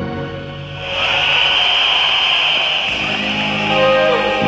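Live concert band music between songs: sustained keyboard chords thin out, and from about a second in a bright, steady hiss swells up as the next song's introduction begins.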